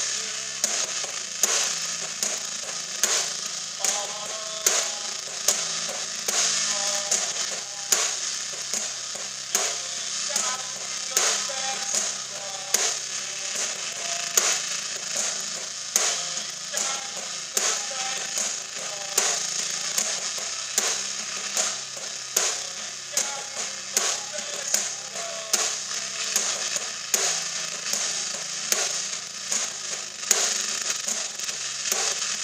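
Live rock band playing: a drum kit with a constant wash of cymbals and regular hard accents about every second and a half, under electric guitar.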